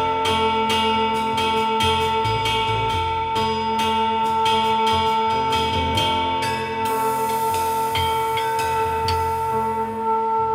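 Live acoustic jazz band with trumpet, upright bass, piano and drums playing. A long note is held throughout over a steady beat of drum or cymbal strikes, about three or four a second, that stops about seven seconds in.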